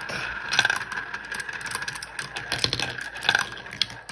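Glass marbles rolling round a plastic funnel bowl of a toy marble run, a steady rolling sound broken by many quick clicks as they knock against the pegs and each other.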